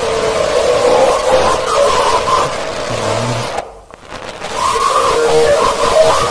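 Loud television static hiss with wavering tones running through it. It drops out for a moment about four seconds in, then comes back.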